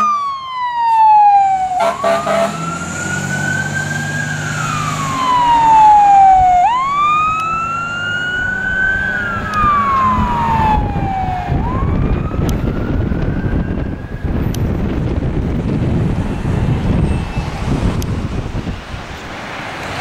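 Fire pumper's Whelen electronic siren on wail, its pitch rising and falling slowly about every four to five seconds, fading away after about twelve seconds as the truck drives off. Road and traffic noise fills the rest.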